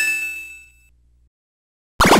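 A bell-like metallic ding sound effect, struck once with many ringing tones, fading away over about a second as the list item's title appears.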